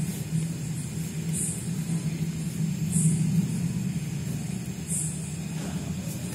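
Pen scratching on paper in short strokes, one every second and a half or so, as a dash-dot line is drawn along a ruler, over a steady low hum.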